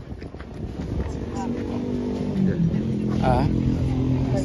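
A motor vehicle engine running and growing louder as it approaches, its pitch dropping about two and a half seconds in.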